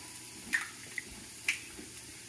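An egg being opened over a mixing bowl: four small, soft drips and clicks about half a second apart as the shell is pulled apart and the egg drops into the flour.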